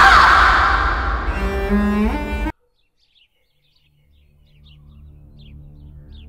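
A woman screaming over loud dramatic film score with low strings rising, cut off suddenly about two and a half seconds in. After a second or so of silence, soft music fades in with birds chirping.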